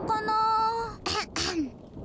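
A cartoon child character's voice holds one steady sung note for nearly a second, then makes a couple of short throaty vocal sounds, the last sliding down in pitch.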